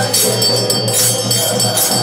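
Brass hand bell (ghanta) rung steadily during an arati, its high ringing sustained, over devotional music with fast jingling percussion and faint singing.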